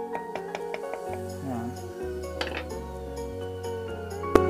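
Background music with a steady bass line entering about a second in. Over it come a few light metallic clinks of a hand wrench working on a motorcycle's oil filter cover.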